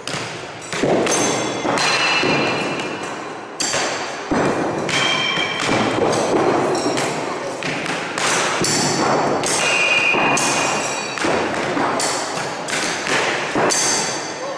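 Steel throwing knives striking wooden target boards in rapid succession, each hit a sharp thud, several followed by a short metallic ring from the blade.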